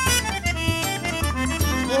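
Forró band playing live: accordion carrying the melody over strummed guitar and a steady drum beat. A singer comes back in with a held "ô" at the very end.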